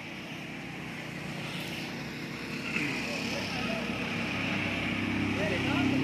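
A vehicle engine running steadily, growing louder over the last couple of seconds, with faint voices in the background.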